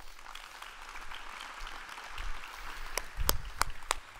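Audience applauding after a talk, with a few sharp knocks near the end.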